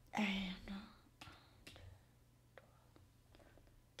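A woman murmurs a short word in the first second, then a few faint, sharp clicks as a tarot deck is handled in her hands.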